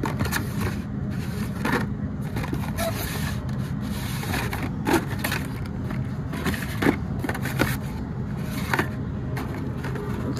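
Blister-packed Hot Wheels cards being flipped through and pulled from a cardboard display rack: a string of irregular plastic clicks and scrapes, the sharpest about halfway through and again near the end, over a steady low background hum.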